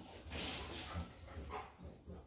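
Several dogs' claws and paws scrabbling and clicking on a tile floor as they break from a sit-stay and run to a recall.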